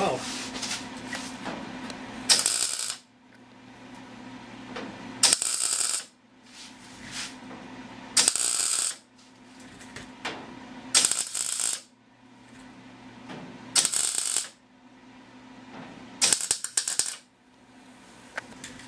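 MIG welder laying a row of short tack welds on a sheet-steel fender: six bursts of arc crackle, each about a second long, roughly every three seconds, with a steady low hum between them. The welder's corroded ground cable has just been cleaned, and it is welding really well.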